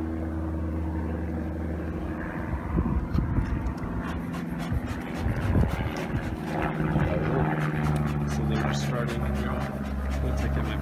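Steady hum of a honeybee colony from an open hive. A few irregular louder puffs about three and five seconds in come from a bee smoker being worked over the frames.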